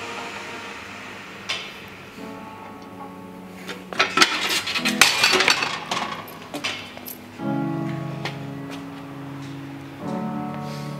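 Background music plays throughout. About four seconds in, a couple of seconds of loud metallic clanking sounds as the chest press machine's weight-stack plates are let down and the user gets off the machine.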